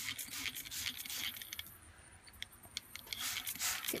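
Hand-pumped trigger spray bottle being squirted in several quick hissing sprays in the first second and a half, then once more shortly before the end.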